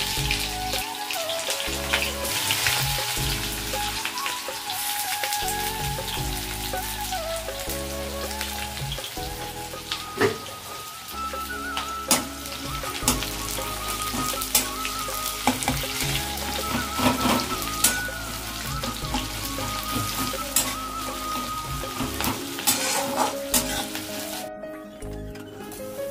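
Sliced onions sizzling as they fry in oil in a steel kadai, with a spatula knocking and scraping against the pan a few times. Background music with a stepping bass line plays throughout.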